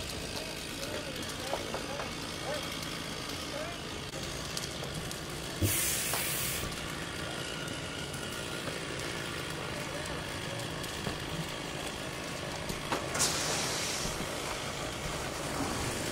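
Steady rumble of a house-fire scene: fire apparatus running and the fire burning, with faint voices. There are two sharp bursts of hissing, each about a second long, about six seconds in and again about thirteen seconds in.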